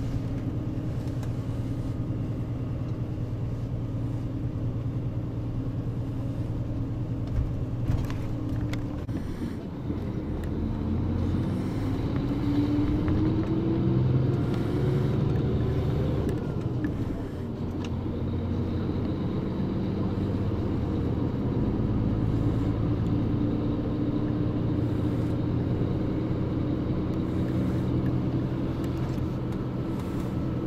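Bus engine and road noise heard from inside the cabin, a steady low hum. About ten seconds in, the engine note climbs gradually for several seconds, then falls back shortly after, and the steady hum carries on.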